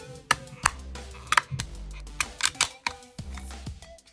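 Hard plastic BGS grading slab giving a series of sharp clicks and snaps as a stubby screwdriver pries its sealed seam apart, working down the edge of the case. Background music plays underneath.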